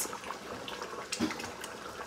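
A pot of palm oil sauce bubbling on the stove, with a short mouth sound about a second in as the cook tastes it from a wooden spoon.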